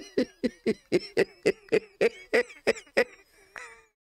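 A man laughing hard in a long run of short, breathy pulses, about four a second, slowing and fading out near the end.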